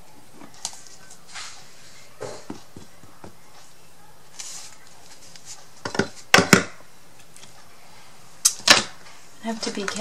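Craft items handled on a worktable: faint rustling, then a few sharp clicks and taps about six seconds in and two more knocks near the end, as a small plastic glue bottle and a laser-cut MDF frame are set down.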